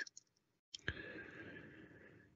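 A single sharp click a little under a second in, followed by about a second of faint hiss, with dead silence on either side: an edit point in a recorded prayer.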